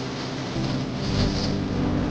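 Instrumental closing music with sustained low notes; a deep bass comes in about a second in.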